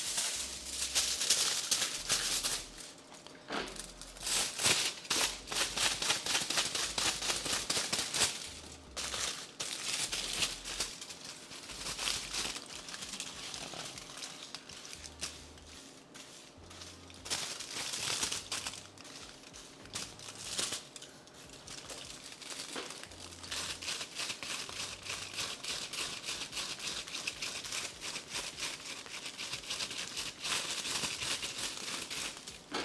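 Aluminium hair foil crinkling and rustling as it is handled and folded around hair sections, a dense run of quick crackles that comes and goes in stretches.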